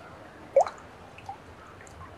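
Water dripping from a plastic bag into a fish tank: one loud, quickly rising plink about half a second in, then a few fainter drops.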